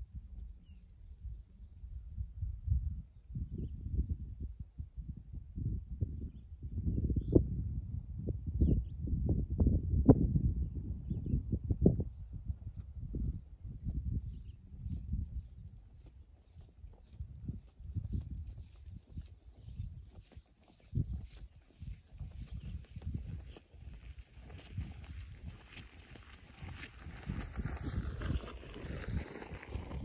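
Wind buffeting the microphone in irregular low rumbling gusts. In the last few seconds, a rustle of footsteps through wet grass grows louder as a hiker walks closer.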